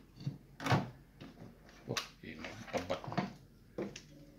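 A few separate clicks and knocks from a TV circuit board being handled on a workbench, the sharpest about two seconds in.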